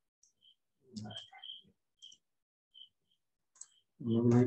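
Faint, scattered clicks from a computer keyboard and mouse, with a brief low murmur of voice about a second in.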